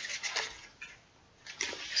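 A few short rustles and swishes of a soft quilted fabric lunch box being turned over in the hands, with a quiet gap partway through.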